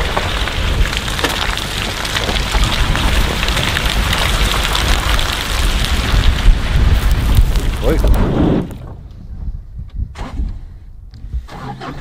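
Pickup truck driving across a grass field, with heavy wind rushing over the microphone along with tyre and engine noise. About three-quarters of the way through the rush cuts off sharply, leaving a much quieter run of the truck with a few clicks.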